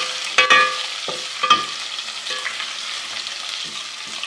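Ginger-garlic paste sizzling in hot ghee as it is stirred, with the stirring spoon clinking sharply against the pan twice, about half a second and a second and a half in. The sizzle slowly quietens toward the end.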